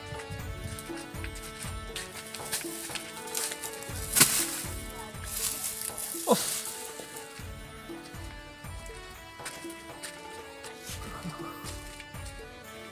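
Background music with held tones and a steady beat. About four seconds in there is a loud burst of dry rustling from a bundle of dry stalks being handled, lasting until about six seconds, with a brief falling tone near its end.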